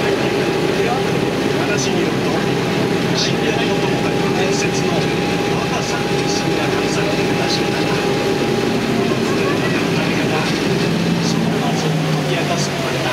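Passenger boat's engine running at a steady cruise, a continuous drone with a steady higher tone in it that drops out about nine seconds in.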